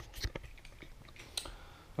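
Camera handling noise: a few light clicks and taps over a low background hum.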